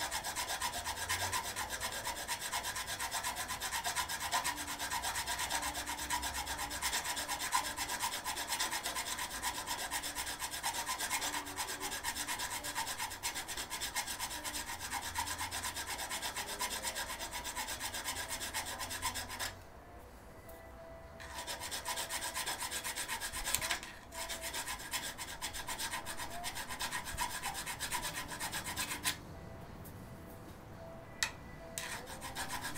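Hand file rasping in quick back-and-forth strokes inside a Weber DCOE carburettor's throttle bore, filing the factory-secured, protruding threads of the butterfly screws flush with the throttle spindle so the screws can be unscrewed. The filing pauses for about a second and a half about two-thirds of the way through, then stops again near the end.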